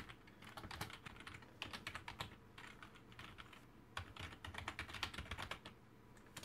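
Typing on a computer keyboard: quick, irregular keystrokes in short runs, faint.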